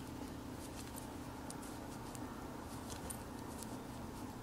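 Faint, irregular clicking of metal circular knitting needles as stitches are purled, over a steady low hum.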